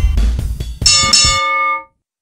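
Animated subscribe-button sound effects: the fading tail of a deep bass hit, then about a second in a bright bell chime of several ringing tones, which dies away and cuts off shortly before the end.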